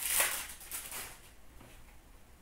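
Foil trading-card pack wrapper crinkling and rustling in the hands, loudest in the first half second, then fainter handling of the cards.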